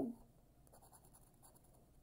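Faint scraping of a scratch-off lottery ticket being scratched with a hand-held scraper, in short, irregular strokes.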